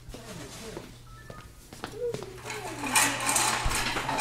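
Rustling and scuffling as people scramble to grab a possum among cardboard boxes. It is quiet at first and louder from about three seconds in, over a steady low hum.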